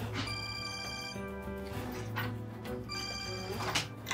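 A telephone ringing over sustained background score music.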